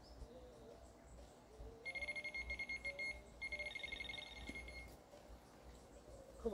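Electronic fishing bite alarm sounding a rapid stream of high-pitched beeps in two bursts, one starting about two seconds in and a second after a short pause, each lasting a little over a second.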